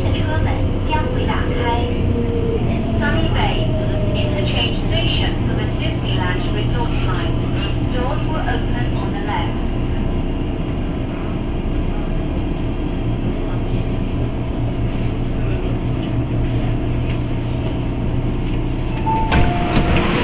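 MTR Tung Chung line train braking into a station, its motor whine falling in pitch over the first few seconds, then a steady low hum as it stands at the platform. Near the end a short two-note tone sounds as the doors open.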